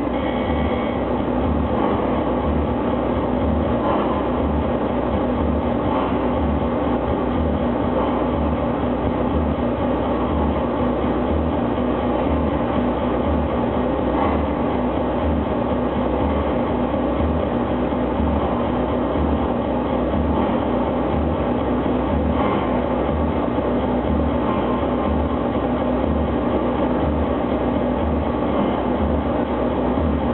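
Live noise music performance: a dense, unbroken wall of distorted noise with a throbbing low end and a faint steady hum underneath, barely changing throughout.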